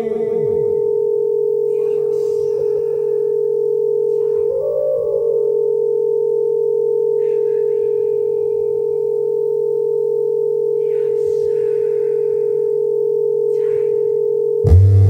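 Electronic drone from a live experimental music set: one steady held tone over a lower hum, with a brief higher tone about four seconds in and short hissy noises every few seconds.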